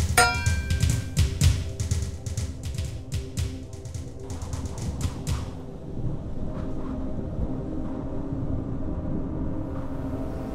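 Dramatic soundtrack music with deep timpani-like drum hits. It opens on a bright ringing hit, and the drumming stops about halfway through, leaving low sustained notes.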